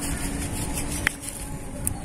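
Low, steady outdoor rumble with a faint steady hum in the first half, broken by two short clicks: one about a second in and one near the end.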